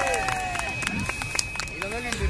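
Firework crackling overhead: a scatter of sharp, irregular pops, with voices of the watching group underneath.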